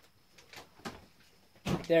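A few faint, short clicks and knocks of handling in an otherwise quiet room, then a man starts speaking near the end.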